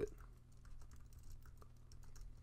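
Faint typing on a computer keyboard: a quick run of keystrokes as a short terminal command is typed.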